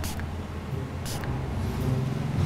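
A steady low hum with two brief cloth rustles, one right at the start and one about a second in, as one man grabs the other's wrist and pushes his arm away.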